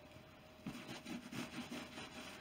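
Microfiber cloth rubbing back and forth over textured Epi leather, working in Bick 4 leather conditioner: soft, faint strokes at about three a second, starting under a second in.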